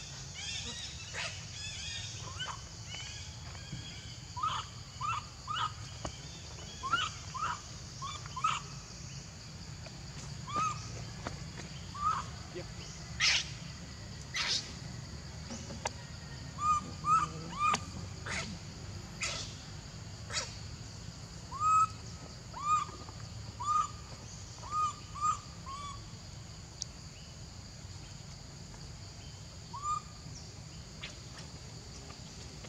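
Short animal calls, each a quick rising-then-falling chirp, repeated in runs of two to five throughout, with a few sharper high squeaks between them and a steady high hiss underneath.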